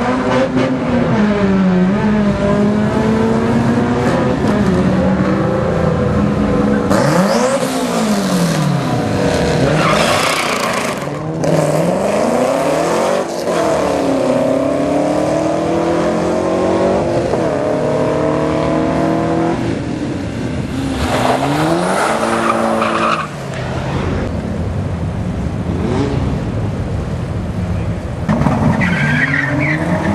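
Street cars' engines revving hard on drag-strip launches, several runs in turn, the pitch climbing and dropping at each gear change. Bursts of tire noise come around the middle.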